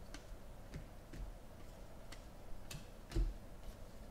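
Glossy foil trading cards being leafed through by hand, the cards clicking against each other as each is slid off the stack. Six or seven irregular clicks, the loudest with a soft knock near the end.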